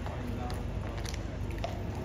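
Hooves of two horses walking on stone paving: a few irregular clops over a steady murmur of voices.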